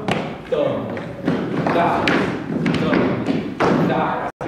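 Dance rehearsal in a studio: a handful of sharp thuds from the dancers' steps and movements on the wooden floor, with voices between them.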